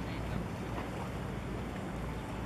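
Steady low rumble of a large cargo ship under way close by, mixed with wind on the microphone.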